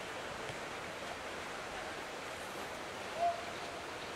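Steady, even hiss of outdoor ambience at a rugby sevens match, with one short shouted call about three seconds in.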